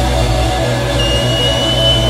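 Live rock band with a loud, sustained, heavily distorted Les Paul electric guitar through the stage amps. A thin, steady high tone comes in about halfway and holds.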